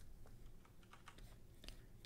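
Faint, scattered clicks from computer keyboard and mouse use, a few separate clicks over near-silent room tone.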